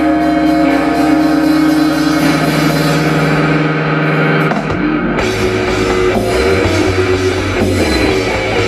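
Live rock band playing through a PA: electric guitars and bass hold sustained chords, then about five seconds in the music shifts into a busier, fuller section with drums.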